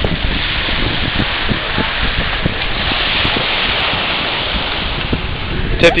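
Wind buffeting the microphone in irregular gusts over a steady hiss of wind and surf.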